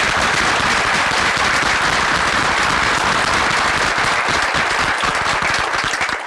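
An audience applauding steadily: many hands clapping together in a dense, continuous patter.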